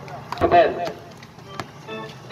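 Sounds of play on an outdoor basketball court: a brief shout about half a second in and several sharp knocks from the ball and players' feet on the court surface.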